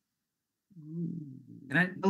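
Speech over a video-call connection: the line is silent at first, then a quiet, low murmured vocal sound from a participant about two thirds of a second in, followed near the end by a woman starting to speak ('Can I').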